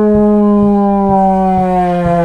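Plastic toy trombone blown in one long held note that slides slowly down in pitch as the slide is pushed out.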